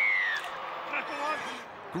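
Rugby league broadcast commentary from the highlights, playing quietly. It opens with a short falling tone.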